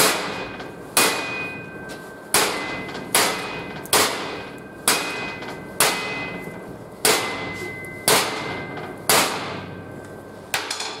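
Hammer blows on a welded joint of square steel tube clamped in a bench vise: about ten hard strikes, roughly one a second, each clanging with a short metallic ring. The joint is being hit as hard as possible to test the weld's strength.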